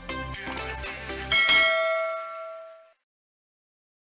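Short outro music with a beat, which ends about a second and a half in on a bright bell-like chime. The chime is the sound effect for a notification bell being clicked, and it rings out and fades over about a second and a half.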